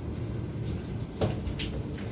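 Elevator car doors sliding shut inside the cab, with a few light clicks and a knock about a second in, over a steady low hum.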